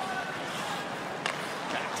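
Steady murmur of a large arena crowd at an ice hockey game, heard on the TV broadcast, with a single sharp click a little over a second in and a commentator's word near the end.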